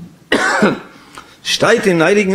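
A man's short cough or throat-clearing into a lectern microphone about a third of a second in, followed by his speech resuming near the end.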